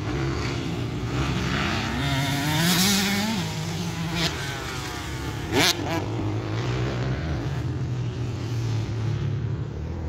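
Several motocross dirt bikes riding the track, their engines revving up and down through the gears. One bike gives a sharp, loud rev about five and a half seconds in.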